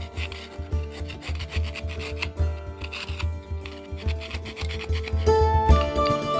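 A metal screwdriver scraping and chipping at ice around a styrofoam mould in repeated rough strokes, about two a second, to free the frozen mould from the ground. Background music plays throughout and grows louder near the end as a plucked melody comes in.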